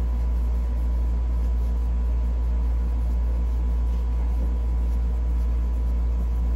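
A steady low hum with a ladder of fainter, higher steady tones above it, unchanging in level.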